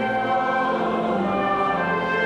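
Trumpet playing a held melody over pipe organ accompaniment, with the organ's bass note changing about a second in.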